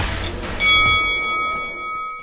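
Intro music giving way, about half a second in, to a single bell-like chime that rings on and slowly fades.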